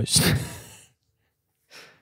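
A man's loud breathy sigh close to a handheld microphone, fading out within a second. A short, faint breath follows near the end.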